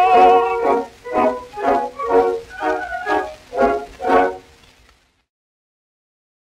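Early gramophone disc recording of a baritone with orchestra: the singer's final held note, with a wide vibrato, ends under a second in. The orchestra then plays about seven short closing chords, roughly two a second, and the music stops about five seconds in.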